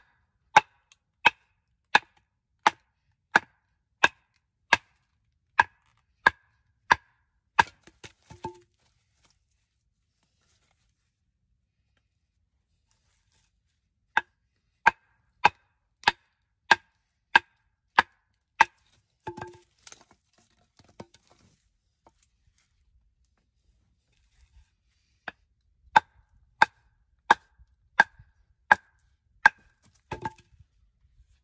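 A wooden baton striking the spine of a Bear Forest Knives Woods Butcher, an 80CRV2 steel fixed-blade knife, to drive it down through wood in subzero cold. Sharp knocks, each with a brief ring, come about one and a half a second in three runs with pauses between.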